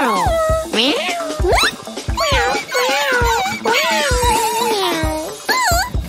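Cartoon cat meowing in a string of long, gliding cries, over background music.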